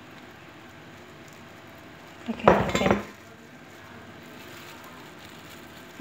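A glass dish knocking and clinking against a glass salad bowl once, for under a second, about two and a half seconds in, as sliced avocado is tipped into the bowl.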